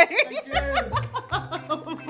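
People laughing over background music, with low bass notes coming in about half a second in.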